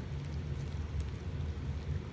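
A steady low background rumble with a faint hiss.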